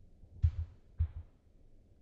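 Two short low thumps about half a second apart, over a faint low hum.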